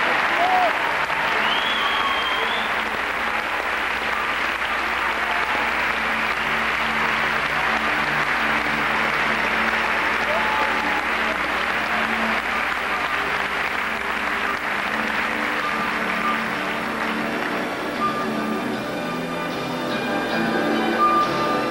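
Arena crowd applauding steadily, with music playing underneath; the applause thins near the end as the music comes forward.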